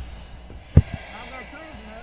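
Air hissing through a firefighter's breathing-apparatus face mask for about a second as the wearer breathes in, with a single dull thump near its start.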